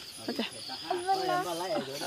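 People talking, with a steady high chirring of night insects behind the voices.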